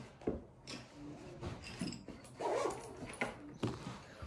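A baby's brief whimpering vocal sounds, among small knocks and rustles at a table.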